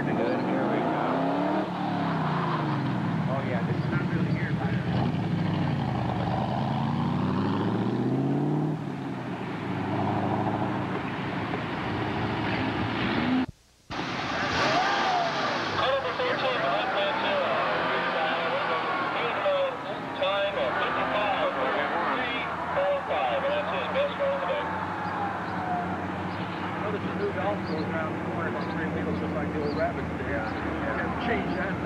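Sports car engine revving up and falling back over and over as the car is driven hard through an autocross course, with the pitch climbing and dropping with each acceleration and lift. The sound cuts out briefly about halfway through, then another car's engine carries on, with voices mixed in.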